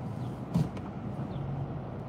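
Car idling, a steady low hum inside the cabin, with a short soft knock about half a second in.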